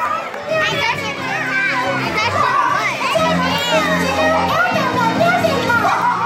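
A hall full of young children shouting and squealing over one another, many high voices at once. Music plays underneath, with held low notes coming in about halfway.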